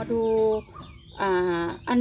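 Speech only: a woman's voice speaking Thai in two long, drawn-out syllables with a short pause between.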